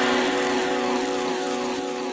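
Electronic dance music breakdown with no kick or bass: a sustained synth drone of several held tones under a hissing, whooshing noise sweep, slowly getting quieter.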